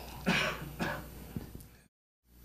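A person clearing their throat: two short rasps in the first second, after which the sound fades and drops out near the end.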